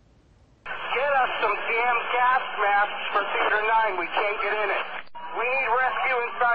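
First responders' two-way radio transmissions: hurried, narrow-band voices over the radio channel, with a short break and a click about five seconds in as a new transmission comes on.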